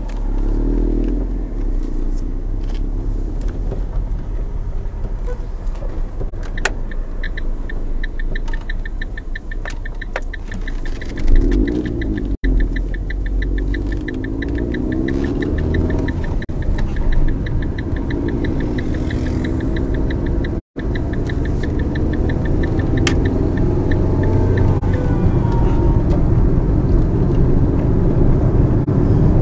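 Low, steady road and engine rumble heard from inside a moving car in traffic. A fast, high ticking runs through the middle stretch, and there is one loud knock about eleven seconds in.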